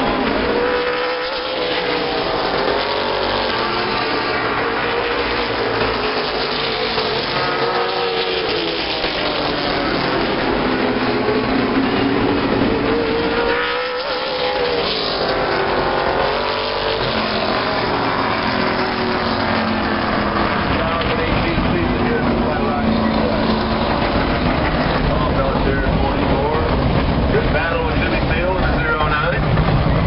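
Late model stock cars' V8 engines running laps on a short oval, a loud continuous engine sound whose pitch rises and falls again and again as cars sweep past.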